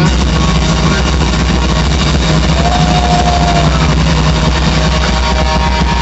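Live heavy metal band playing loud and steady: distorted electric guitar, bass guitar and drum kit. A single higher note is held for about a second near the middle.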